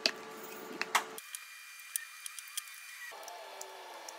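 Sharp clicks and knocks of a moulded plastic plant pot being worked out of its aluminium mould and handled, the loudest near the start and about a second in. The background changes abruptly about a second in and again about three seconds in.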